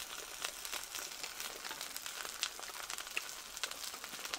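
Beef intestines frying on a hot iron pan: faint sizzling with scattered small crackles.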